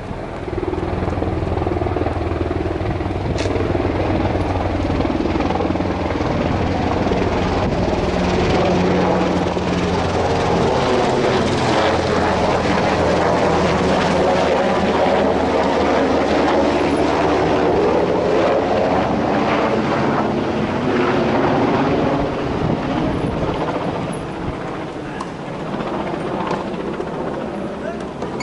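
An aircraft flying low overhead: a loud, steady engine drone that swells about a second in, holds through the middle and fades toward the end.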